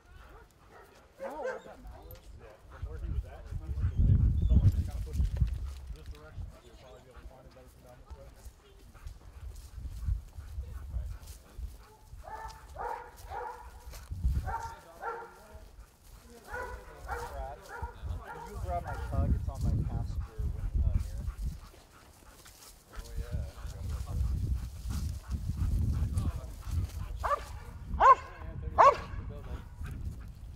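A police working dog barking in bouts of short, sharp barks, with three loud barks in quick succession near the end.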